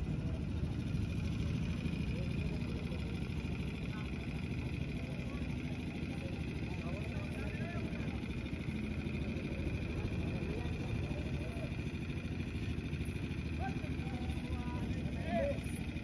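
Roadside ambience: a steady low rumble of passing traffic, with faint distant voices now and then.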